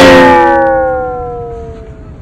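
A loud sound effect: a sudden hit followed by a long, smooth tone that slowly falls in pitch and fades over about two seconds.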